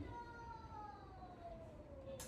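A puppy whining: one long, thin whine that glides slowly and steadily down in pitch.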